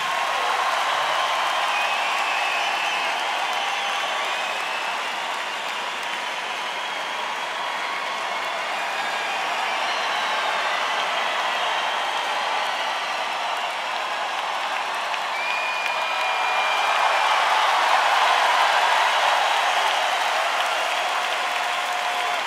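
Large concert crowd applauding and cheering at the end of a live song, swelling a little louder about three-quarters of the way through.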